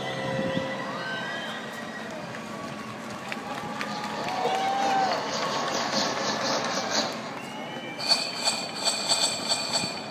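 Sound-effects soundtrack of a building projection-mapping show played over loudspeakers: a mix of noise and shifting tones, with a run of quick clicks, about four a second, in the middle and a pulsing, rhythmic passage near the end.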